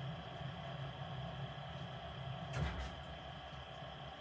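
Lennox SLP98UHV gas furnace running with a steady low hum from its draft inducer and blower. About two and a half seconds in comes a single dull pop as the burner shuts off after the call for heat is cancelled.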